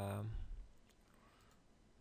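A few faint computer mouse clicks in quiet room tone, after a held spoken 'uh' fades out in the first half second.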